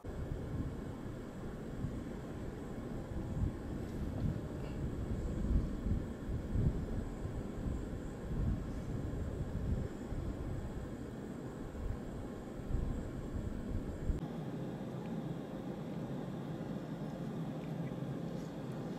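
Wind on the microphone: a low, unpitched rumble that swells and dips in gusts, easing in its deepest part about fourteen seconds in.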